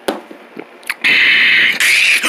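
A person making loud slurping, gulping noises with the mouth to imitate drinking, starting about a second in after a quiet moment with a couple of faint clicks.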